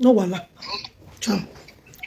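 A woman's voice making short wordless vocal sounds: one falling in pitch at the start, a breathy noise, then a second brief falling sound a little past the middle.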